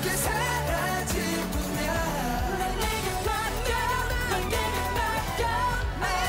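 K-pop song performed live by a male idol group: male voices singing over a loud dance-pop backing track with a steady driving beat.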